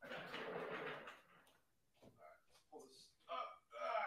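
Faint, distant voices talking away from the microphone, after a muffled noise in the first second.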